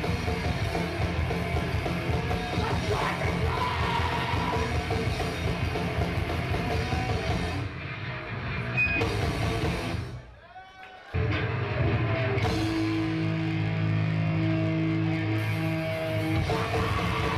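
Hardcore band playing live, with dense distorted guitars and drums. About ten seconds in the sound cuts out for about a second. It comes back with long held guitar notes ringing over the band.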